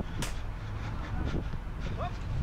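Field sound from a football player's body-worn action camera during play: a steady low wind rumble on the microphone, with one sharp knock about a quarter of a second in and a few fainter thuds after it.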